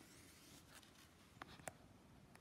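Faint rustle of a sketchbook's paper page being turned, followed by two small sharp ticks about a second and a half in.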